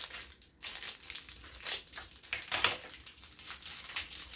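Clear plastic packet crinkling and crackling in irregular bursts as it is handled and cut open with scissors.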